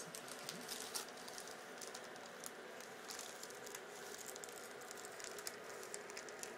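Wrapping paper crinkling and rustling as a present is unwrapped by hand, in faint quick crackles.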